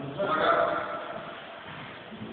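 A person's voice giving a drawn-out call that swells to its loudest about half a second in and then fades away.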